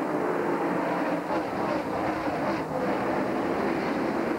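A pack of NASCAR Busch Grand National stock cars racing by, their V8 engines running at speed. The sound is steady, with many engine notes overlapping.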